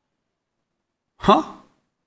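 About a second of dead silence, then a man's voice gives one short syllable, a word or a breath, that trails off quickly.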